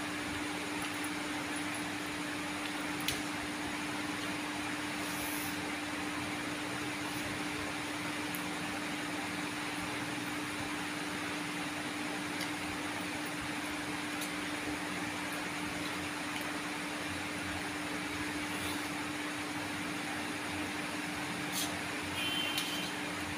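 Steady hum and hiss of an electric fan running, with one low steady tone under it. A few faint clicks of a metal fork on a plate.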